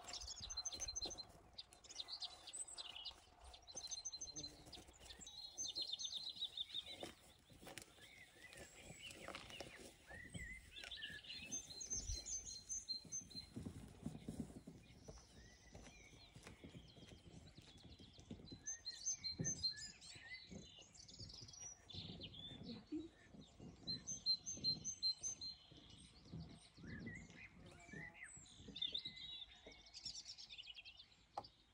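Small songbirds chirping and singing on and off, in quick series of short, evenly spaced high notes, over scattered low thuds and rustles.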